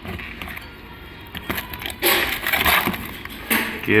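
Handling noise from a broken engine connecting rod and its cracked cap being turned over in the hand: a few light metal clicks, then a run of scraping, rustling noise about two seconds in.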